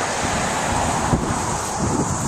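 Wind buffeting the microphone of a handheld camera, a steady rushing noise.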